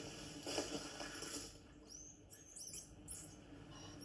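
Edible dormouse (Glis glis) giving a short run of faint, high-pitched squeaks about halfway through, heard through a television's speaker.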